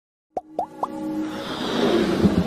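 Electronic intro music with sound effects: three quick rising blips about a quarter second apart, then a music swell that builds in loudness.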